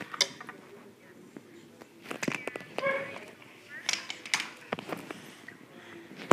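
Small plastic toy figures being handled, giving scattered light clicks and knocks on a wooden surface, with a few brief, wordless voice sounds about halfway through.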